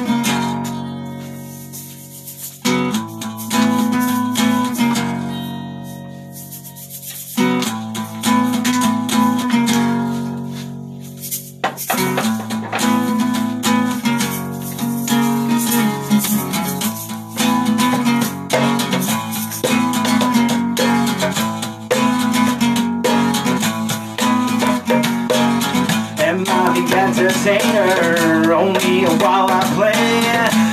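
Guitar intro. The first three chords are each struck and left to ring out and fade, then steady rhythmic strumming begins about twelve seconds in, with a hand shaker rattling along.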